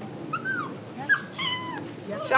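A dog whining twice in high, gliding whimpers: a short rise-and-fall, then a longer whine about a second in that jumps up and slowly slides down in pitch.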